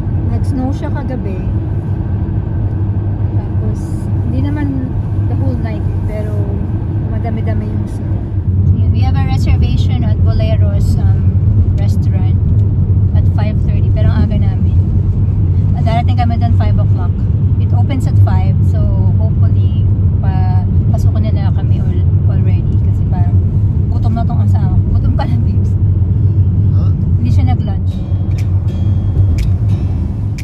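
Steady low road rumble heard inside a moving car's cabin, tyre and engine noise while driving, growing louder about eight seconds in.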